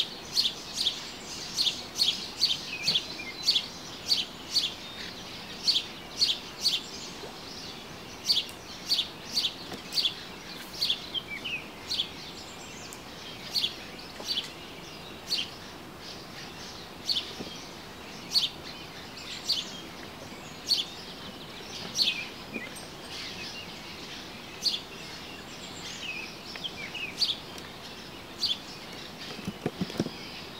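A songbird calling with short, sharp, high chirps repeated one to two times a second, with brief pauses, over a steady background hiss of outdoor noise.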